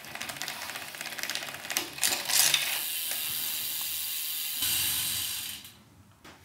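Road bike chain thrown off over the outside of the big chainring, followed by a fast run of ratchet clicks that turns into a steady buzz, typical of the rear freehub as the wheel spins free; it stops suddenly just before the end. This is the overshift that happens when the front derailleur has no high limit set.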